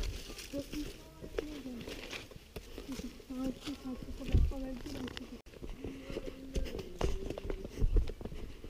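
Faint, distant voices of people talking, with scattered footsteps and rustling on a dirt forest trail.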